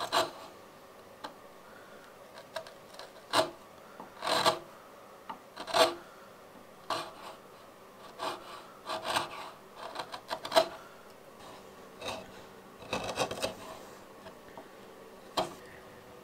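Hand chisel paring the rounded end of a small wooden part, making short scraping cuts at irregular intervals, about a dozen in all.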